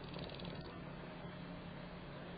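Quiet room tone: a steady low hum under an even hiss, with a faint quick flutter in the first half second.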